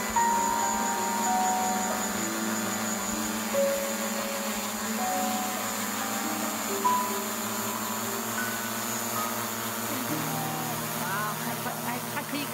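Background music of slow, held keyboard notes over a steady hiss. Near the end, a low steady hum and some voice-like sounds come in.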